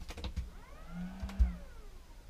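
A motorhome cassette toilet's electric flush being started from its wall button. Button clicks come right at the start. Then a short whine rises and falls in pitch over a low hum, with a sharp thump about one and a half seconds in.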